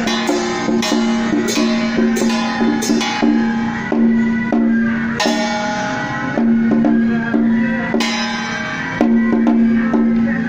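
Taiwanese temple procession music: a steady beat of drum and wood-block strokes under a held tone that breaks off and returns every few seconds.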